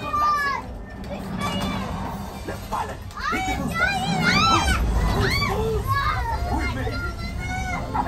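Children shrieking and squealing in high, rising-and-falling cries, loudest and most frequent in the middle stretch, over the low rumbling soundtrack of a Millennium Falcon flight-simulator ride.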